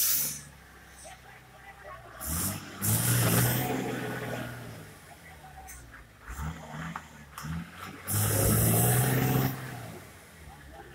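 A minibus engine revving in repeated surges as it crawls over a rough, rocky dirt road, with a short sharp noise right at the start. The loudest surges, around three seconds in and near the end, come with a hiss.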